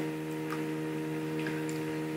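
Steady electrical hum in the recording: a constant buzz with a stack of evenly spaced overtones and nothing else over it.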